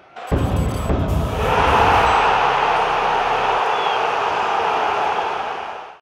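Animated logo sting for a channel's end card: a sudden deep bass hit a moment in, then a loud, sustained noisy roar that fades out near the end.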